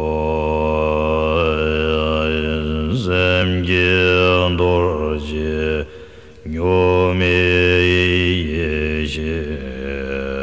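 Slow, low-pitched Tibetan Buddhist chanting, drawn out in long held notes, with a short break for breath about six seconds in.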